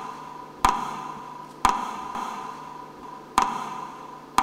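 Metronome beats played over a sound system to mark a minute of silence: sharp ticks about a second apart, each with a short ringing tail.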